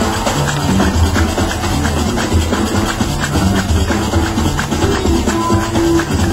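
Gnawa–jazz fusion band playing live: a low, recurring bass line under fast, dense percussion.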